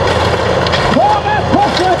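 Formula Offroad buggy's engine at full throttle on a steep loose-dirt climb, its pitch sweeping up about a second in and then dipping and recovering as the tyres spin.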